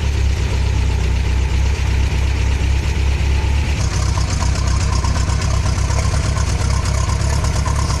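Nysa 522 van's engine idling unrevved through its burnt-out old muffler, a loud, steady exhaust drone. About four seconds in it turns brighter and harsher as it is heard right at the tailpipe.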